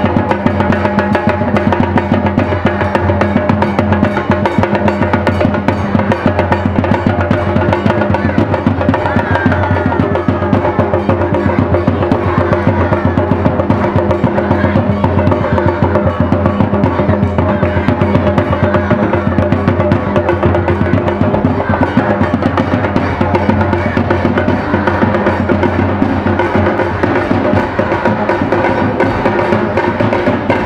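Loud drum-led music with fast, steady beats over sustained held tones; a wavering melody line comes in about a third of the way through.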